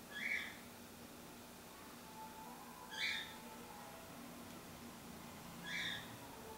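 A bird calling: three short, high chirps spaced about three seconds apart over faint room noise.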